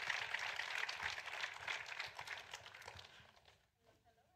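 Audience applauding, the claps thinning out and then cutting off suddenly about three seconds in.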